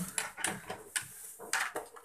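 Handling sounds: a string of light knocks and clicks with some rustling, as hands move things around a plastic-wrapped desktop computer and pick up a cable.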